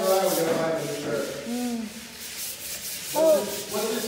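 Short voice sounds, rising and falling in pitch, with the loudest near the end, over a steady rasping hiss.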